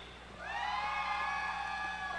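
A single person in the audience giving a long, high-pitched "woo" cheer. It rises briefly at the start and is then held steady for about a second and a half.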